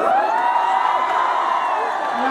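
Audience cheering, with a drawn-out whoop that rises, holds and falls back.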